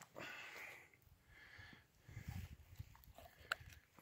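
Dog sniffing and chewing a small piece of hot dog, faintly, with a light click near the end.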